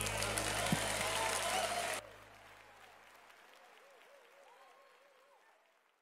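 Audience applauding. About two seconds in the sound drops suddenly to a faint level and then fades away.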